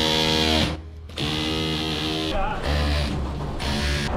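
Cordless Ryobi hammer drill with a rubber bung on the end, buzzing as it is pressed against the steel tunnel formwork as an improvised concrete vibrator to help the fresh concrete flow along. It runs, stops briefly about a second in, then runs on.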